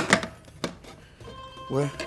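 Round aluminium baking trays knocking together: two sharp metallic knocks at the start and a fainter one about half a second later, as one tray is handled over the other.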